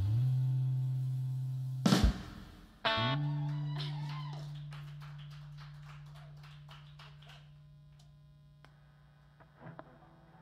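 A live band's held electric-guitar chord is cut off by a sharp hit about two seconds in. About a second later a new distorted guitar chord is struck and rings out, slowly fading away.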